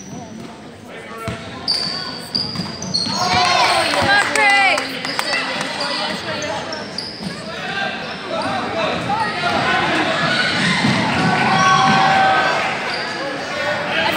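Basketball bouncing on a gym floor during a game, with many voices of spectators and players talking and shouting over it.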